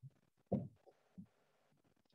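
Near silence, broken by two or three short, faint low thuds, the clearest about half a second in.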